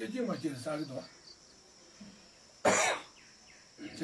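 A single short, loud cough about two and a half seconds in, coming after a second of a man's speech and a pause.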